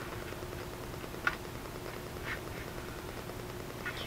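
Faint steady room hum with two or three light ticks as a clear plastic grid ruler is shifted and set down on paper.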